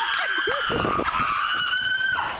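A long, high-pitched squeal of about three seconds, its pitch sliding slowly down and then holding level.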